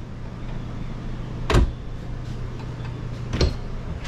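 Wooden overhead kitchen cabinet doors being handled, giving two sharp knocks, one about a second and a half in and another near the end, over a steady low hum.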